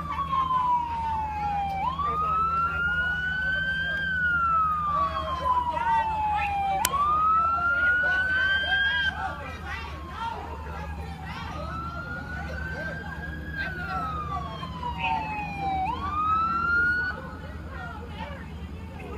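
Emergency vehicle siren on a slow wail. Its pitch rises quickly, climbs on slowly, then falls, repeating about every four to five seconds, and it cuts off near the end.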